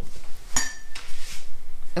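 A hard clink with a brief ring about half a second in, then a second or so of light clattering, as watercolour painting gear (paint palette and brush) is handled.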